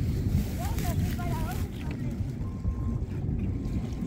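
Low rumble of wind on the microphone of a handheld camera being moved about, with a few faint short chirps about a second in.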